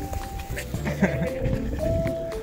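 Short dog vocalizations from rough play between dogs, over light, cute background music with held notes.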